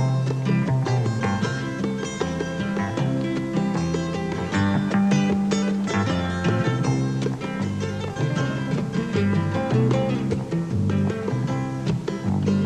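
Acoustic folk band playing an instrumental passage: two acoustic guitars picking, an upright double bass walking through low notes, and bongos played by hand.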